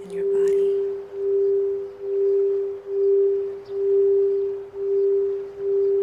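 Crystal singing bowl sounding one steady, sustained tone that swells and fades about once a second.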